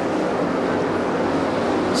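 A field of sprint cars' 410 cubic-inch V8 engines running flat out around the track, a dense, steady drone with no single car standing out.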